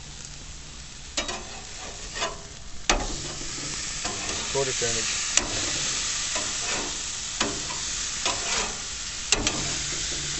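Ground-beef burger patties sizzling on a hot gas grill, a steady hiss that gets louder about three seconds in, broken by scattered sharp pops of spitting fat.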